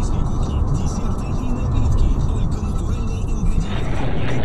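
Road and engine noise inside a moving car, picked up by a dashcam microphone. The sound changes abruptly near the end as the footage switches to a different dashcam.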